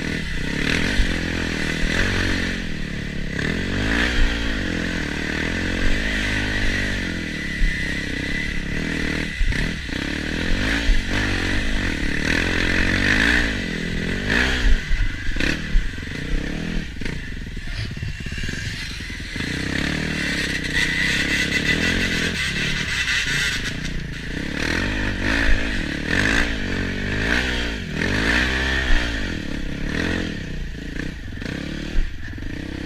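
Enduro dirt bike engine revving up and down over and over as the bike is ridden along a rutted snowy trail, with scattered sharp knocks and clatter as it goes over bumps.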